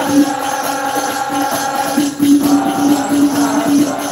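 A group of men singing a devotional Maulid song (sholawat) together, with hand drums and jingling percussion beating steadily underneath.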